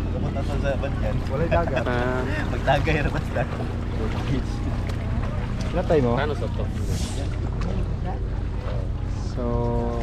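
Several people talking in the background over a steady low rumble.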